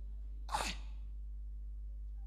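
A single short, sharp burst of breath and voice from a man, falling in pitch, about half a second in, over a steady low hum.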